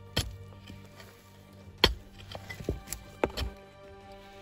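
A mattock striking dry, stony soil, several sharp chopping thuds at irregular intervals, over steady background music.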